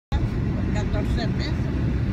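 Steady low rumble of a car's cabin on the move: road and engine noise. A faint voice is heard in the middle.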